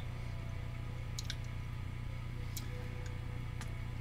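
Room tone: a low, steady hum with three faint clicks spread through it.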